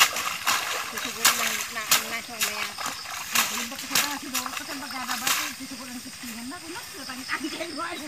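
Sharp splashes and sloshing of muddy paddy water as rice seedlings are pulled by hand from a flooded nursery bed and gathered into bundles. The splashes come about twice a second for the first five seconds, then thin out. A person's voice runs along underneath.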